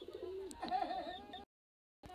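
Faint background cooing like a bird's, wavering in pitch, which cuts off abruptly into dead silence about one and a half seconds in.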